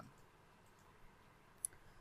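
Near silence, broken by one short, faint click about one and a half seconds in.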